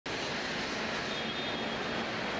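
Steady, even rushing noise of an airport terminal's ambience, with no distinct events.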